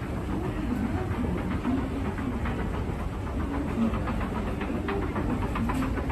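Hitachi escalator running downward: a steady low mechanical rumble from the moving steps, with short clicks and rattles from about halfway through, more of them near the end.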